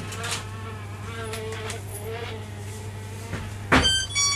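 A housefly buzzing, its pitch wavering as it flies about, over a steady low electrical hum. Near the end comes a sharp click and a brief ringing tone.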